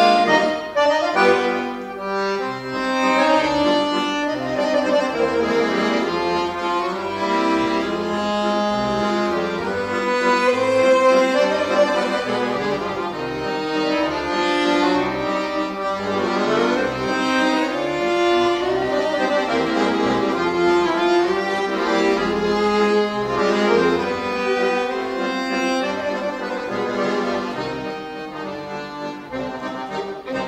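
Fiddle and accordion duo playing a traditional-style tune, the accordion's chords and melody prominent under the fiddle. The music grows quieter near the end.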